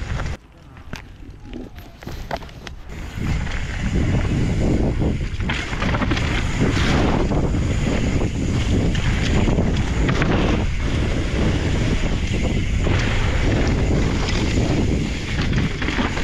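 Wind buffeting the microphone of a camera riding on an enduro mountain bike, with the tyres rolling over a dirt trail and the bike rattling over bumps. It is quieter for the first few seconds, then loud and steady once the bike is on the singletrack.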